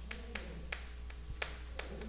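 Chalk tapping and clicking against a chalkboard while characters are written: a faint series of about seven short, irregular taps.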